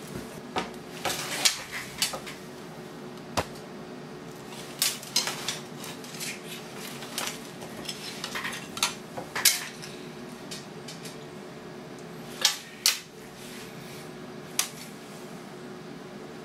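Metal spoon clinking and scraping against a ceramic cereal bowl as cereal is stirred and scooped, in irregular sharp clinks about one every second or so.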